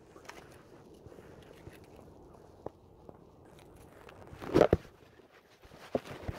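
Mostly quiet handling noise: scattered faint clicks, and one brief rough scuffing burst about four and a half seconds in, as a just-landed smallmouth bass is gripped and lifted in a gloved hand.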